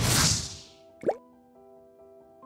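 Motion-graphics sound effects for an animated title card: a whoosh that fades over about half a second, then a short pop that sweeps up in pitch about a second in. Soft held musical notes follow and change chord twice.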